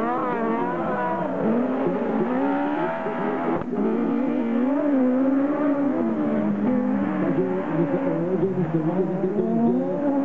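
Engines of 1600-class autocross buggies, several at once, rising and falling in pitch as they rev through gears and corners on a dirt track. There is a brief sharp break a little over a third of the way in, after which the revving goes on.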